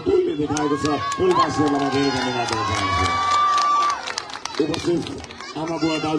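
A crowd cheering and shouting, with high drawn-out shouts and scattered hand claps through the middle, and a man's voice at the start and again near the end.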